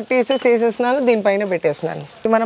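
A woman's voice speaking continuously.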